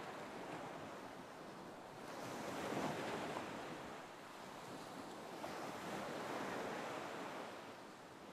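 Faint ocean surf washing ashore, swelling as a wave comes in about three seconds in and again around six seconds.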